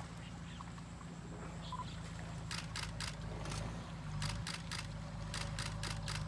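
Camera shutters clicking in quick bursts, runs of three or four shots about four a second, starting about halfway through. A steady low hum runs underneath.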